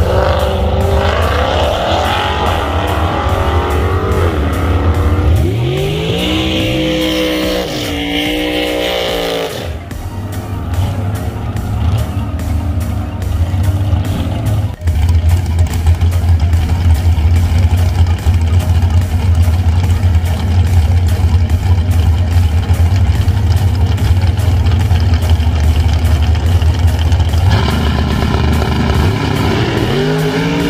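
Two cars launching off a drag strip start line, their engines rising in pitch as they accelerate away through the gears. Then a dragster's engine idles loudly with a heavy, rapid low pulse, and rises in pitch again near the end as it pulls up to the line.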